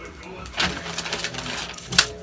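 Faint background voices over a low hum, then a single sharp smack near the end as a thrown object hits a person.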